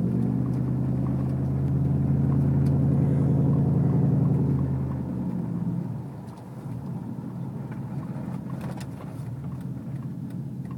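Pickup truck engine running under throttle, heard from inside the cab with road and tyre noise. The engine note is steady and strong, then falls away and quietens about five to six seconds in.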